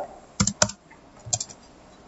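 Computer keyboard keystrokes: two sharp key presses about half a second in, then two softer ones a little after a second. They are the keys that clear a selected web address and load the new page.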